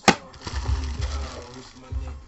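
A sharp plastic clack just at the start as a hard plastic card case is set down on a stack of cased cards, followed by light handling rustle. A hip-hop beat with a low thump about twice a second plays under it.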